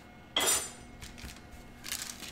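A single clink of a kitchen utensil being set down on the counter, about a third of a second in, ringing briefly.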